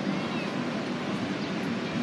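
Steady outdoor rushing noise from a busy open-air scene, with a faint high chirp just after the start.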